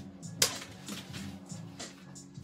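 Low-tack masking tape being peeled off the edge of a paper painting: a sharp click about half a second in, then faint scattered crackles, over background music.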